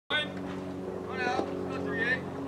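Voices calling out briefly across a baseball field, near the start and again just over a second in, over a steady low mechanical hum like an idling motor.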